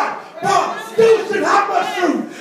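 Loud shouted voices in a church hall: a preacher shouting into a microphone over the PA, with the congregation calling out. It comes in short loud phrases.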